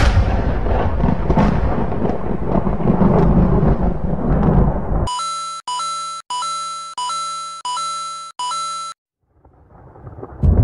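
A thunder rumble that fades over about five seconds, followed by an electronic two-note tone, a short lower note stepping up to a held higher one, repeated six times in quick succession. It stops about a second before the end, and rumbling starts to rise again at the very end.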